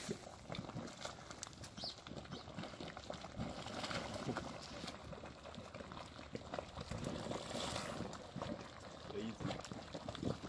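Geothermal mud pool boiling: thick mud bubbles bursting in frequent, irregular plops.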